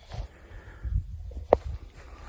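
Low rumble on the microphone with soft rustling steps through tall grass, and one short sharp click about one and a half seconds in.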